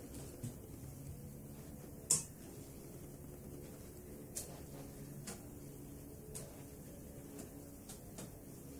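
A few short, sharp clicks over a low steady hum; the loudest click comes about two seconds in, with fainter ones spread through the rest.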